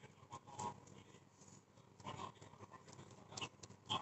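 A foam sponge dabbing and rubbing paint onto the clay-covered surface of a glass bottle: faint, irregular scuffs and pats.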